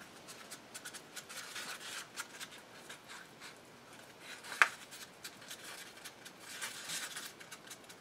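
Stick stirring thick epoxy resin and walnut dust in a small paper cup: faint, irregular scraping and light ticks against the cup, with one sharper click a little past halfway.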